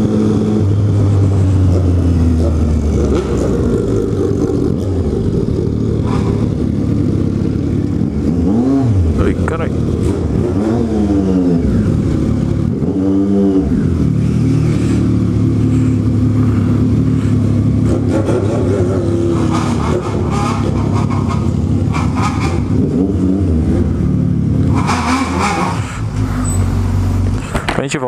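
Motorcycle engines running, with several quick rev blips that rise and fall in pitch around the middle. The first part is heard from the saddle while riding; the later revving echoes in an enclosed garage.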